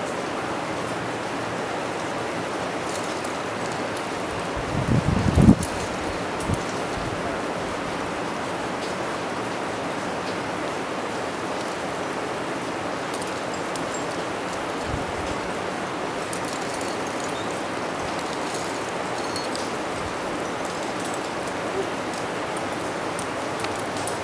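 Steady rushing outdoor background noise, even and unbroken, with a brief low rumble about five seconds in.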